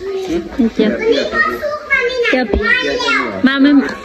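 Children's voices chattering and calling out over other talk, with one brief knock a little after halfway.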